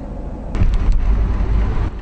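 Car driving by: a loud, low engine and road rumble that swells about half a second in.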